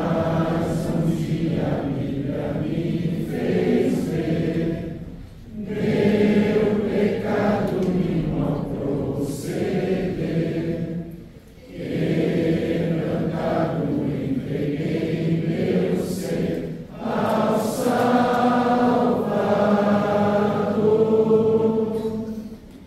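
A congregation singing a hymn together, in long sung phrases with a short pause for breath about every five to six seconds.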